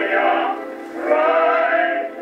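A vocal quartet singing a hymn on an acoustic-era Edison phonograph record, played back on the phonograph: a thin, narrow sound with no deep bass. The voices break off briefly about half a second in and come back in the next phrase about a second in.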